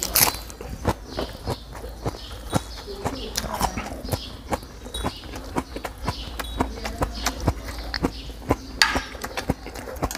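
Close-miked chewing of a mouthful of crisp lettuce and spicy squid salad: an irregular run of wet crunches and mouth clicks, several a second.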